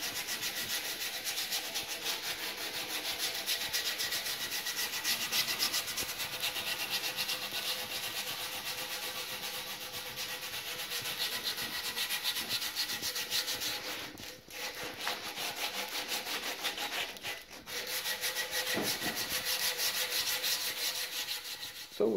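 Sandpaper rubbed by hand along a bare wooden walking stick in quick back-and-forth strokes, with two brief pauses about two-thirds of the way through.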